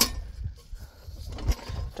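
Low rumble and rustle of a handheld camera being moved, with one dull thump about one and a half seconds in.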